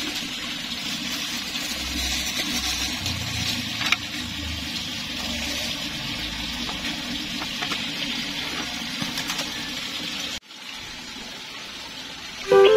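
Steady rush of running water, with low handling bumps in the first half and a single click about four seconds in; near the end it cuts off and resumes more quietly.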